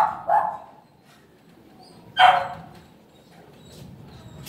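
A dog barking: two quick barks at the start and a single bark about two seconds later.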